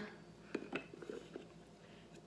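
A few faint, short taps and clicks from a small painted tile being set down into a hinged wooden box.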